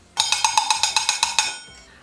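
Pot-banging 'panelaço' sound effect: a metal pan struck rapidly, about ten ringing clangs a second for just over a second, then dying away.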